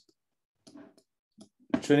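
A pause broken by a few faint, short clicks, then a man's voice starts speaking near the end.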